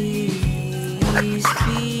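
A small dog yipping in short bursts, about a second in and again at the end, over background music with a steady beat.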